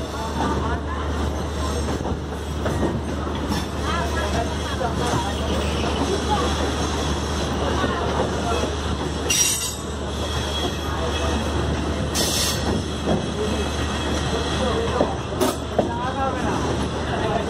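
A passenger train's wheels running over the rails and points at low speed, heard from an open coach door: a steady low rumble with wheel squeal and a few short sharp hisses or clicks about midway and near the end.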